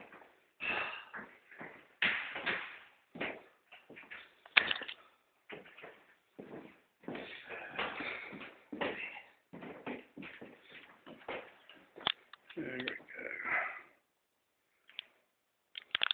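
Indistinct voices talking, with two sharp clicks, one about a third of the way in and one about three-quarters of the way in.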